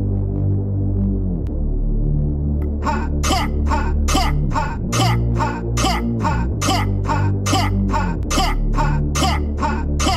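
Dubstep track playing back from the production session: a heavy synth bass with repeated downward pitch drops. About three seconds in, a fast, regular run of crisp percussive hits joins it.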